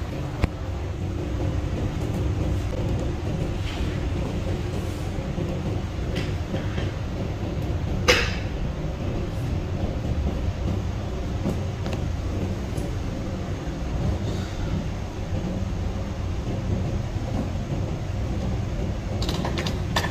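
Steady low rumble of room noise, with one sharp click about eight seconds in.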